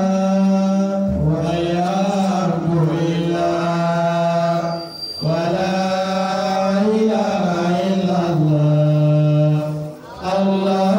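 A man's voice reciting the Qur'an in a slow melodic chant, holding long drawn-out notes. He pauses for breath about a second in and again near the middle.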